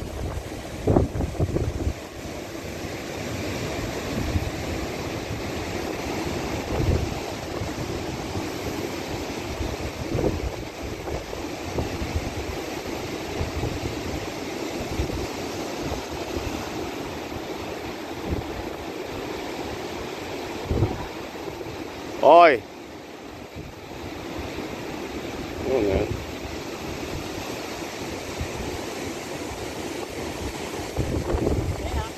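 Wind buffeting the microphone over the steady wash of surf breaking on rocks, with gusty rumbles in the first couple of seconds. About three-quarters of the way through, a short, loud cry rising in pitch stands out, and a fainter one follows a few seconds later.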